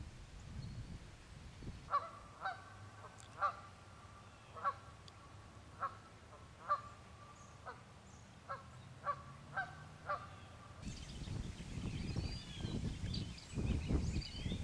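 Geese honking, about ten separate calls spaced unevenly over roughly eight seconds, starting about two seconds in. About three seconds before the end the background changes abruptly to a louder low rumbling noise with faint high bird chirps.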